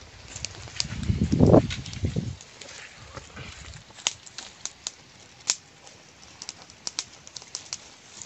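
A loud, low rumbling thump about a second in, then scattered light crackles and clicks of dry leaf litter and palm fronds being handled.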